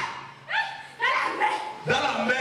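A woman crying out in short yelps, each rising sharply in pitch, about three in quick succession.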